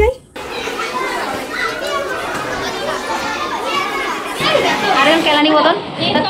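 Many children's voices chattering and calling out at once, a busy hubbub of overlapping voices, a little louder from about four and a half seconds in.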